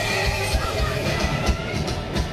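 Live hard rock band playing loud, recorded from the crowd: sustained electric guitar over drums hitting at a steady pace.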